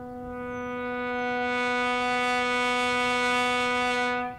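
A single sustained horn-like note on one steady pitch, swelling louder and brighter as it is held, then stopping abruptly.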